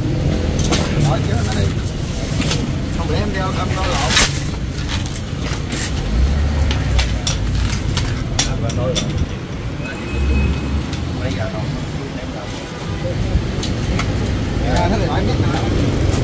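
Steady road-traffic rumble with scattered sharp metallic clicks from the steel hoist chain being handled, the loudest about four seconds in, and faint voices in the background.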